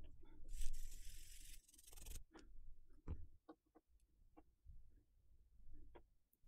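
Quiet handling of a laptop flex cable: small clicks, taps and rubs from fingers and the connector. About half a second in, a steady hiss starts and stops abruptly after about a second and a half.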